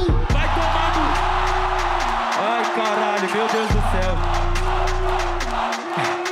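A hip-hop battle beat with a heavy, steady bass line, under a loud crowd cheering and shouting. The bass drops out about two seconds in, comes back, then drops out again near the end.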